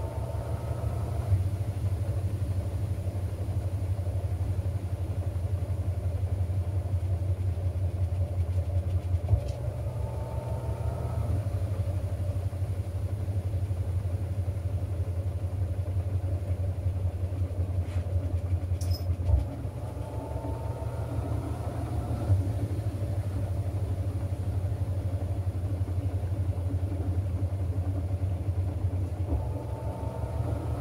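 Panasonic 16 kg top-load washing machine in its spin cycle, the drum full of sheets spinning at about 590 RPM: a steady low hum, with a faint rising whine coming and going about every ten seconds.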